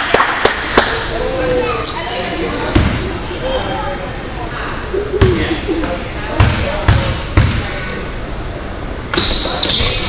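Basketball bouncing on a gym floor: a handful of dribbles about three to seven and a half seconds in as a player readies a free throw, over spectators' chatter in an echoing gym.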